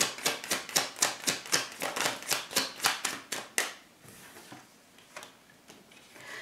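A tarot deck being shuffled in the hands: a quick, even run of card slaps, about four or five a second, that stops about three and a half seconds in, followed by a few faint clicks of cards.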